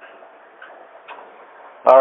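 A pause between a man's words: faint steady background hiss with a few faint ticks, then a sharp click and his voice starting near the end.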